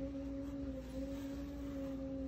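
A steady pitched hum: one low tone with a second tone an octave above it, holding level without change.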